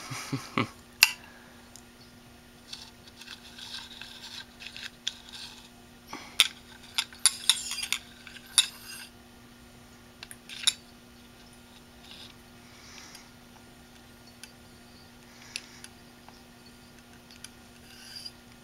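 Metal-on-metal clinks, clicks and short scrapes of a hand tool working on the exposed head actuator arm and parts inside an opened hard drive, busiest in the first half and thinning out to occasional clicks.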